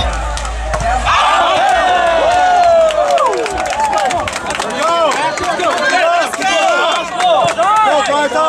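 Crowd of spectators yelling and shouting over one another during a volleyball rally, with many sharp smacks mixed in, densest in the first half.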